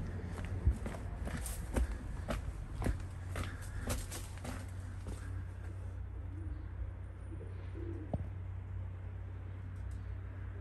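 Footsteps on a dirt path for about the first five seconds, then a few faint low pigeon coos over a steady low rumble.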